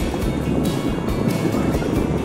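A vehicle running along a rough dirt road: steady engine and road rumble with wind noise, with music playing over it.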